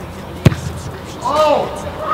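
A soccer ball struck hard by a kick: one sharp thud about half a second in. About a second later a voice calls out, rising and falling in pitch.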